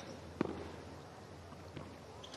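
A tennis ball struck by a racket: one sharp hit about half a second in, then a fainter knock near the end, over quiet court background.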